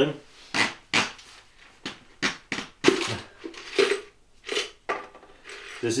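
Metal jigsaw blades being handled and unpacked, clinking and rattling against each other in a string of irregular sharp clicks.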